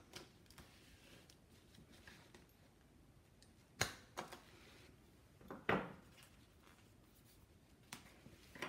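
Hand-held plier-type hole punch clicking as it works through a small stack of paper sheets: a few sharp clicks, with two louder snaps about four and six seconds in.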